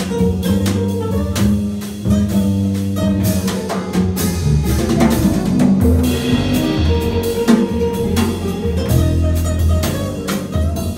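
A jazz trio playing live: drum kit, upright double bass and guitar together.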